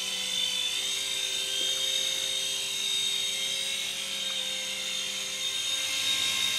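Brookstone gyro-copter, a small indoor RC toy helicopter, in flight: its electric motors and rotors make a steady high whine over a lower hum.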